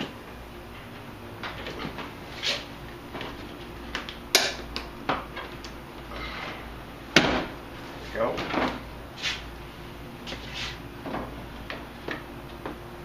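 Plastic headlight assembly being worked loose by hand and pulled from its opening in the front of the vehicle: a run of irregular plastic clicks and knocks, the sharpest about four and seven seconds in.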